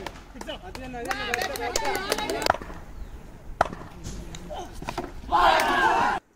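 Players shouting out on the cricket ground, raised voices for a second or so, then a single sharp knock about three and a half seconds in, and a loud shout near the end.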